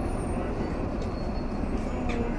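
Busy city intersection ambience: a steady low rumble of traffic with the noise of a crowd of pedestrians.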